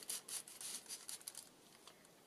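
Faint paper rustling as a paper journaling card is slid against and into a paper envelope pocket: a run of short scratchy rustles in the first second or so, then quieter.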